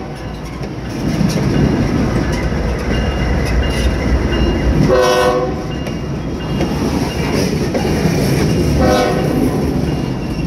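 Freight train rolling past: the rumble of a trailing diesel locomotive gives way to hopper cars clattering over the rail joints. A multi-note locomotive horn sounds a short blast about halfway through and a shorter one near the end.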